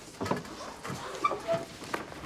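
Scattered light knocks, rustling and shuffling as students handle and search wooden school desks, with a brief squeak about halfway through.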